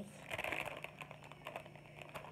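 Light crinkling and scattered small clicks of a clear plastic sample bag holding a single-serve coffee pod as it is handled.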